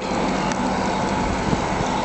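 Steady rushing noise of blizzard wind, with a car driving slowly through deep snow on the road.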